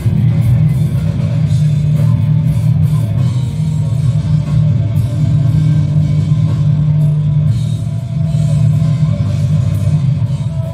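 Loud rock band music with a drum kit and a guitar solo.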